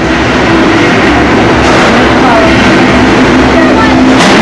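Loud, dense, continuous din from a combat-robot fight: robot drive and drum-weapon motors under crowd voices, with a steady low hum throughout.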